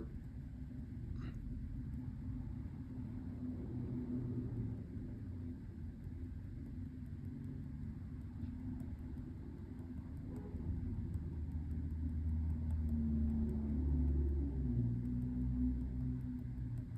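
Low background rumble, swelling from about ten seconds in and easing near the end.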